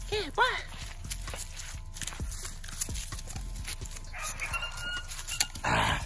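A young pit bull tugging at a furry lure on a rope, with scuffing and clicks over dry leaves and grass. There is a short whine about half a second in and a louder rough burst near the end.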